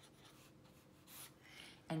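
Felt-tip marker writing on notebook paper: faint scratchy strokes, a little louder on a couple of short strokes in the second half.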